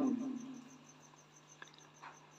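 Near silence in a pause of speech: a faint steady low hum with a faint, rapid high-pitched pulsing above it, and a single small click about one and a half seconds in.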